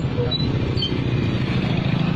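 A vehicle's engine running steadily with a low, pulsing rumble, heard from on board with road and wind noise while moving.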